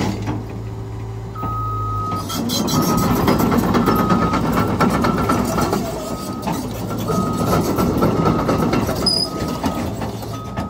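Cat 320 Next Generation excavator's four-cylinder C4.4 diesel engine running, growing louder under hydraulic load from about two seconds in as the machine works a pile of concrete and rock rubble. A single-pitch warning alarm beeps on and off at uneven intervals.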